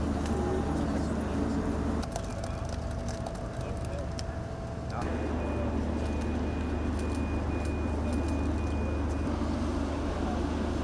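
Outdoor harbour ambience: a steady low rumble with people talking. The rumble eases for about three seconds from two seconds in, then returns. From about five seconds in, a faint beeping repeats about twice a second for roughly four seconds.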